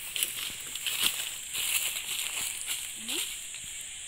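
Footsteps crackling and rustling through dry grass and fallen leaves, an uneven run of small crunches.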